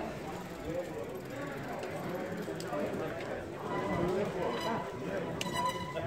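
People's voices talking in a street, overlapping indistinct conversation.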